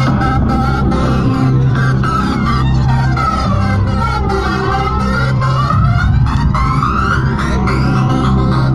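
Tekno dance music mixed live by a DJ and played loud over a free-party sound system. It has a steady heavy bass and a fast beat, with high synth sweeps gliding up and down in the middle.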